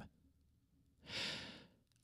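A man's single short breath into a close microphone, a soft hiss about a second in, in an otherwise near-silent pause.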